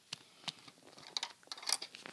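A few light, scattered plastic clicks and taps from Lego bricks being handled.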